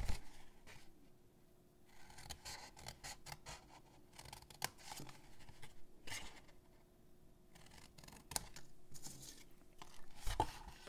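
Scissors cutting through cardstock in a series of short, irregular snips.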